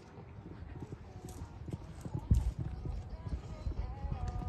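A pony's hooves cantering on a sand arena surface, a run of dull thuds, with one heavier thud a little past halfway.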